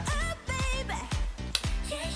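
K-pop girl-group dance-pop song playing, with a steady drum beat and singing. It is going from the bridge back into the chorus with part of the instrumental taken out.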